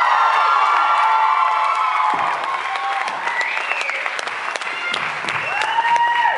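Concert audience applauding and cheering, with many high-pitched shouts and whoops over the clapping.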